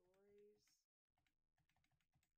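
Computer keyboard typing: a quick run of keystrokes about a second in, typing a name into a text box.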